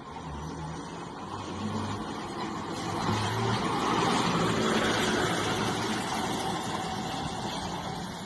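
Truck engine and tyres passing close by on a muddy dirt road, growing louder as it approaches, loudest about four to five seconds in, then easing off a little.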